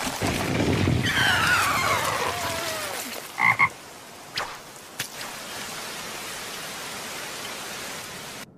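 Anime sound effects: a loud noisy swirl with falling whistling tones, then a cartoon toad croaking twice in quick succession about three and a half seconds in. A steady patter of rain follows.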